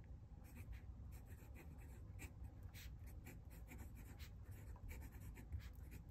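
Esterbrook Estie fountain pen's fine nib scratching faintly across notebook paper in short, irregular strokes as a word is written.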